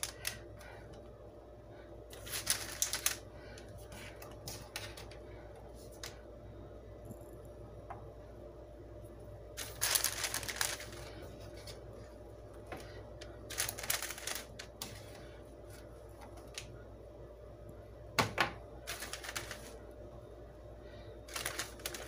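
Irregular light clicks and taps of hardened chocolate-covered pretzels being peeled off a silicone baking mat on a metal sheet pan and set down on parchment paper, with brief clusters of handling noise scattered through, over a faint steady hum.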